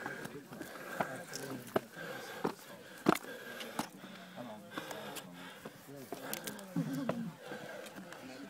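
Voices of people talking, with a few sharp knocks and scrapes, the loudest about three seconds in, as the climber scrambles up rough stone steps.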